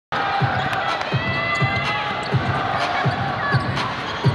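Basketball being dribbled on a hardwood court: about six evenly spaced bounces, under voices and the hum of a crowded arena.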